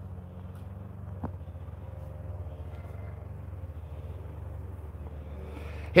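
Steady low background rumble with a single faint click just over a second in.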